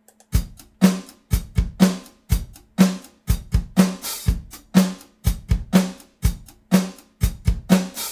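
Virtual drum kit from EZdrummer 3 playing back a groove: kick and snare in a steady beat, with the kick replaced by a sample loaded from the sample browser. The kick sounds clean (スッキリ).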